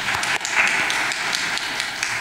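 Audience applauding, many hands clapping together at a steady level.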